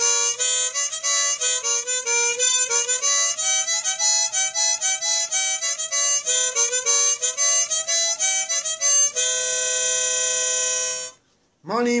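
Harmonica solo: a quick run of short notes that ends on a long held chord, cut off about eleven seconds in. A man starts singing right at the end.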